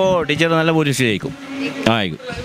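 A man speaking into a handheld microphone, his voice rising and falling in pitch, with a short pause in the middle.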